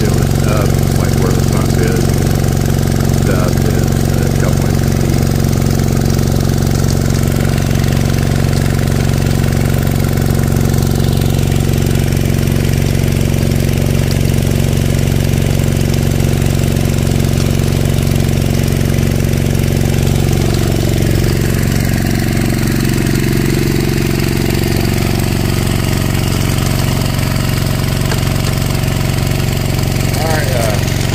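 A small gasoline engine driving a water pump runs steadily at a constant speed, with water rushing and splashing through the highbanker sluice that the pump feeds.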